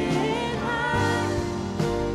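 Live church worship band playing a slow worship song, with male and female vocalists singing over guitar and drums; a low bass note comes in about halfway through.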